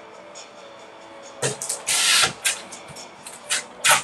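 Faint background music, then several short, sudden bursts of noise close to the microphone, the longest and loudest about two seconds in.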